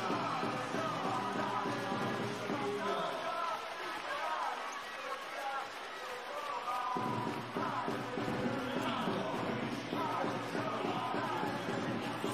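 Arena music playing over crowd noise in a volleyball hall.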